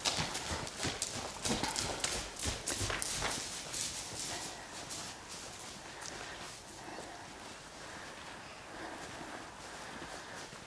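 Saddled Icelandic horse walking on straw-bedded ground: soft, irregular hoof steps, thickest in the first few seconds and then fewer and fainter.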